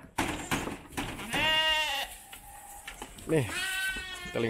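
A young Texel lamb bleats once, a high-pitched call lasting about half a second, after a few light knocks near the start.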